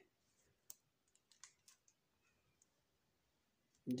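A few faint, sharp clicks of remote-control buttons being pressed, the clearest about three-quarters of a second in, over near silence.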